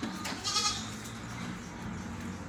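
A goat bleating once, briefly, about half a second in.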